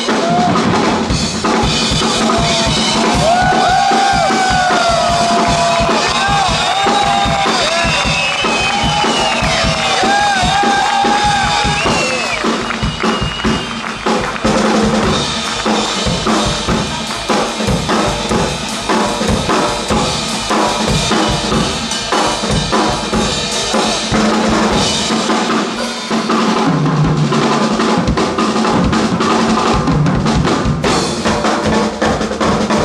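Two drum kits played together in a live drum duet: fast, dense kick, snare and tom strokes with cymbals and rolls. High gliding tones rise and fall over the drumming during the first twelve seconds or so.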